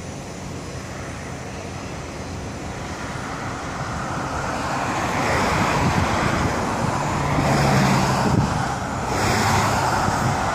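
Road traffic on the road beside the railway: tyre and engine noise from passing cars swells over several seconds, loudest about eight seconds in, with a low engine hum as a vehicle goes by.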